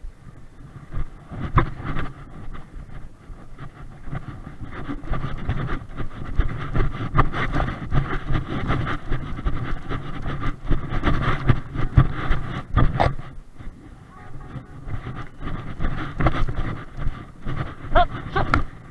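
Wind rumbling on a body-worn camera's microphone, with irregular rustling and knocks as the wearer moves on foot over tussocky grass.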